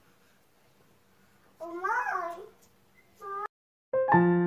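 A small child's high-pitched wordless call, rising then falling, lasting under a second about halfway through, followed by a shorter, fainter call near the end.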